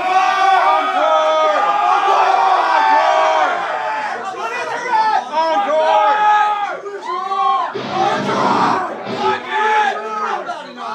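Club crowd shouting and cheering between songs, many voices at once, with a brief noisy burst about eight seconds in.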